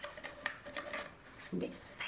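Paper and cardboard rustling and scraping with a run of small clicks, as a tight-fitting paper number card is worked onto a cardboard tube.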